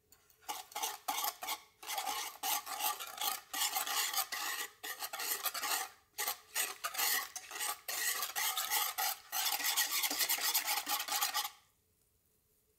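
Wire whisk beating corn starch into orange juice in a nonstick saucepan: quick, rhythmic strokes of the metal tines scraping the pan and churning the liquid. The strokes come in several runs with short pauses and stop shortly before the end.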